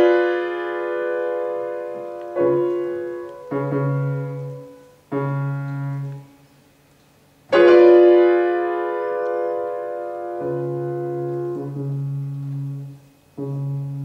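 Grand piano playing a slow solo interlude in a classical song accompaniment: sustained chords struck one after another and left to ring and fade. A brief silence comes before a loud, full chord about seven and a half seconds in.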